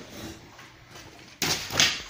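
A large paper wall calendar is slapped down onto a desk: two loud, rustling thumps close together about a second and a half in.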